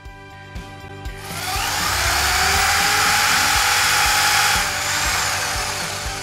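Corded electric drill boring a deep hole into pine, spinning up with a rising whine about a second in, running steadily under load, then easing off near the end.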